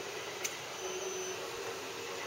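Steady low background hiss of a room, like a fan or air conditioning running, with one faint click about half a second in.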